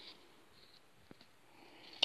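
Near silence: quiet room tone, with a couple of faint small ticks a little after a second in.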